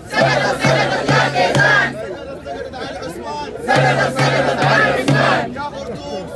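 Protest crowd chanting a slogan in unison with four strong beats, twice, with a quieter stretch between the two chants.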